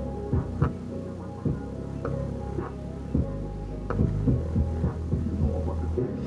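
Bass-heavy music played through a bare Kicker CompR 12-inch dual voice coil subwoofer driven by a two-channel amplifier: deep steady bass notes punctuated by sharp beat hits.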